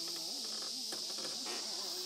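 Cicadas droning steadily in a high, even hiss, with faint human voices wavering underneath.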